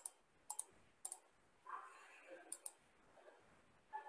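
Faint computer mouse clicks: a few single clicks spread out, with a quick pair about two and a half seconds in, as menus in the molecular-graphics program are clicked open.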